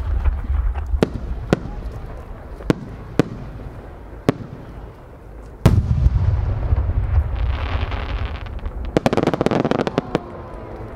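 Size-8 (No. 8) senrin-dama aerial firework shell: single sharp pops about every second from the small flowers that go up with it, then a loud boom with a long low rumble as it bursts a little over five seconds in. A dense crackling rattle of many small sub-shells bursting follows toward the end.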